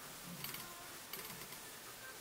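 Quiet room hiss with a few faint, soft ticks, about half a second in and again a little after a second in, from handling the dotting tool while dotting polish onto a nail.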